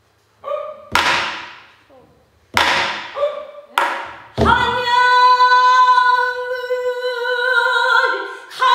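Buk barrel drum struck four times, about a second apart, as the pansori accompaniment begins. A female pansori singer comes in about halfway through on a long held note.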